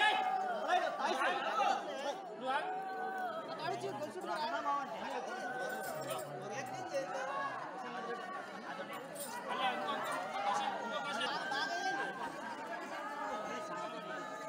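Several people talking over one another: overlapping chatter of many voices at once.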